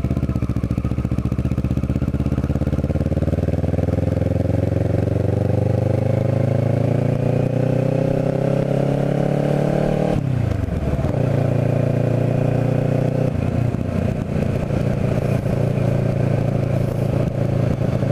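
Kawasaki Ninja 650R parallel-twin engine heard from the rider's seat as the bike pulls away, its note rising steadily for about ten seconds. It drops sharply, then settles into a steady cruise.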